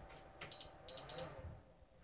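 A click followed by three short, high electronic beeps from a small handheld device, the first slightly longer and the other two close together.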